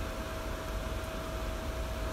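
Steady background hum and hiss with a faint steady whine, unchanging: a small fan or kitchen appliance running.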